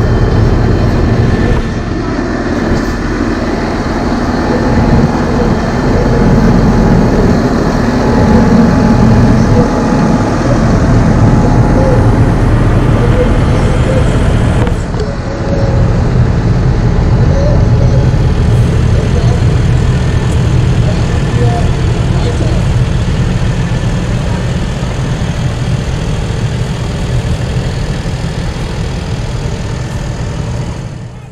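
Diesel tractor engines running close by as a convoy of tractors drives past, loud and steady, with a short dip about halfway through.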